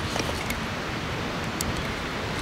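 Steady wind noise on the microphone outdoors, with a few faint ticks.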